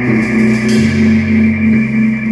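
Rock band playing live in a quiet passage with the drums out: a steady held note sounds over a low bass line that steps down about a second in and back up near the end.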